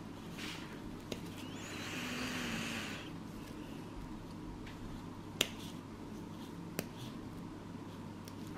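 Steel nail nippers snapping through a thick, fungus-infected toenail: three sharp clicks, one about a second in, the loudest about five and a half seconds in and another about a second later. A soft hiss runs between about two and three seconds in, over a steady low hum.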